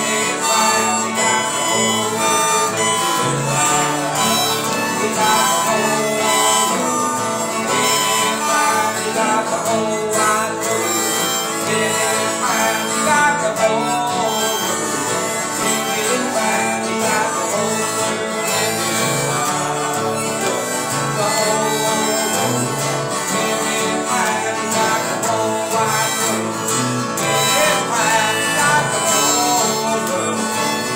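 A country-gospel instrumental of strummed acoustic guitars with a harmonica melody played by children.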